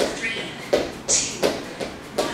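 Sneakers landing on a hardwood floor during a fast alternating knee-strike drill, a steady run of thuds at about two to three a second, with a short hiss of breath about a second in.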